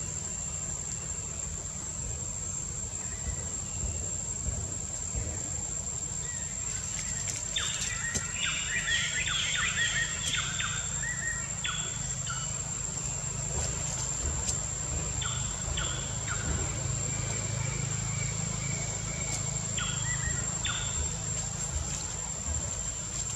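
Forest ambience: a steady high-pitched insect drone, with bursts of chirping bird calls starting about seven seconds in and again twice near the end, over a low background rumble.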